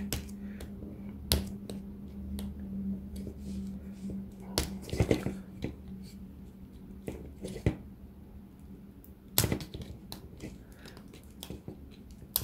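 Small plastic balance-lead connector being worked loose from a battery pack's BMS by hand: scattered clicks and scrapes of plastic and of handling, with a few sharper knocks spread through, over a faint steady hum.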